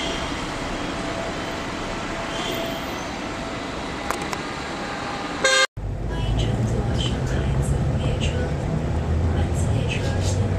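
Steady station-platform ambience beside the Shanghai Transrapid maglev train. About halfway through a brief loud burst and a dropout mark a cut, and the sound becomes the louder, steady low hum inside the maglev's cabin as it moves off.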